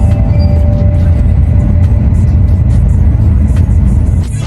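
Steady low rumble of a train running, heard from inside the passenger cabin, with background music over it.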